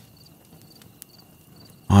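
Night-time cricket ambience: a faint steady high trill with short, higher chirps repeating about every half second, and a couple of faint clicks, one at the start and one about a second in.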